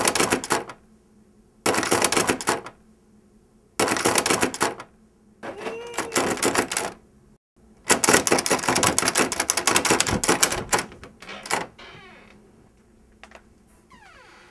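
A door's metal lever handle is rattled hard, giving fast metallic clicking in four bursts of about a second each. The last burst is the longest, about three seconds. A short rising-and-falling tone comes between the bursts, about six seconds in.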